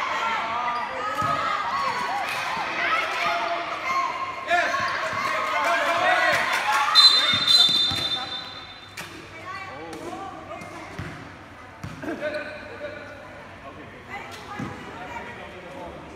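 A basketball bouncing on a hard court under many overlapping, indistinct voices of children and spectators calling out. About halfway through, a referee's whistle blows once for about a second and a half, and the voices and bouncing then fall much quieter.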